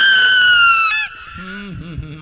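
A woman's long, loud, high-pitched scream into a microphone, slowly falling in pitch and breaking off about a second in, followed by a brief, lower cry.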